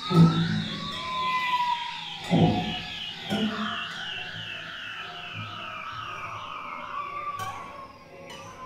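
Experimental ensemble music mixing whale-like electronic sounds with live instruments. A high chirping pattern repeats about three times a second and sinks slowly in pitch, and three deep, falling swoops sound in the first half.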